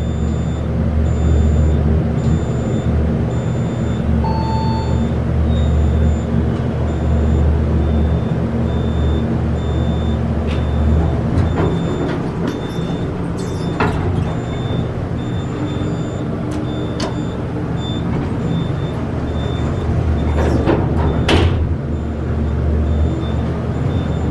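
Otis hydraulic elevator running with a steady low hum, with a few clicks and knocks from the cab and doors, and a short beep about four seconds in.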